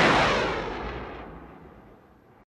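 Cinematic impact sound effect for an animated logo: one heavy hit that dies away over about two seconds, its ringing tail falling in pitch.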